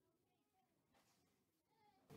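Near silence: faint room tone, with a faint short pitched sound near the end.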